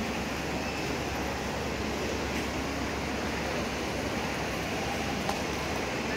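Steady, even background noise of a busy open-air space, with no single clear source, and a small click about five seconds in.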